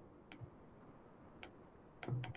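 Near silence broken by two faint ticks of a stylus tip on a tablet's glass screen during handwriting.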